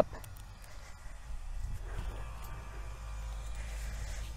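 Hand auger being twisted counterclockwise and pulled up out of stiff clay about a metre down, the soil scraping faintly against the auger bucket, over a steady low rumble.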